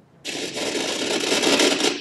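A loud rustling, rubbing noise close to the microphone. It starts abruptly about a quarter second in and stops just before the end.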